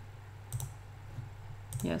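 Computer mouse clicks as a file is opened: one sharp click about a quarter of the way in, then a few faint ticks, over a steady low hum from the desk's computer fan.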